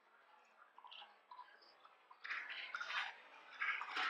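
Black bear moving in a shallow creek: faint drips and small clicks at first, then splashing water from about two seconds in, coming in bursts and growing louder.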